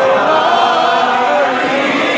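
A naat, an Urdu devotional poem, chanted by a man's voice in long, wavering melodic lines.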